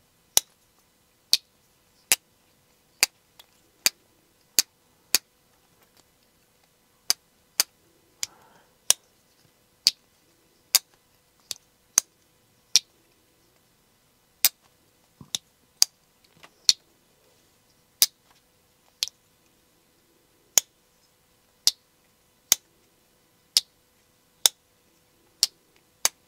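Serge Panchenko Slip 7 titanium slipjoint pocket knife opened and closed over and over, its backspring snapping the blade into the open and closed positions. Each snap is a sharp, hard clack, about one a second with a few short pauses, a sound likened to two glass marbles hitting.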